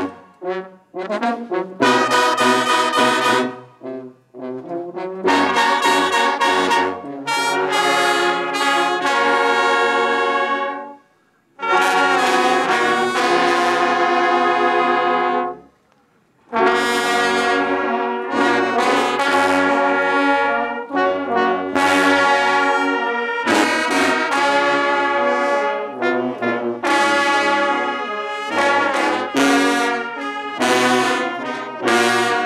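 Brass band of trombones, sousaphones and euphoniums playing a slow tune in held chords. Its phrases are separated by short breaks, and two of them, near the middle, fall almost silent.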